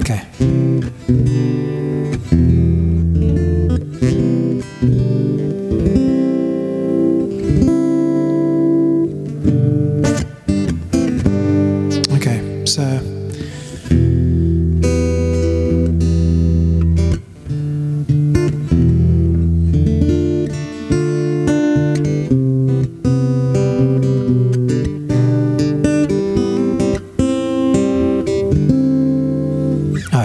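Acoustic guitar played as chord accompaniment, the chords ringing and changing every second or two with short breaks between them.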